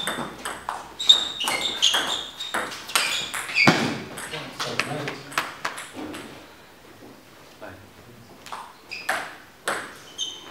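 Table tennis rally: the plastic ball clicking off bats and table in quick succession for about four seconds, with short shoe squeaks on the floor. After the point ends there are scattered ball bounces, and a few more clicks near the end.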